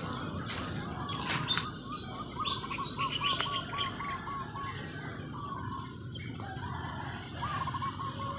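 A bird calling in quick runs of repeated short notes, about five a second, with higher chirps over them; the run starts again near the end. A few sharp rustles or knocks in the first second and a half.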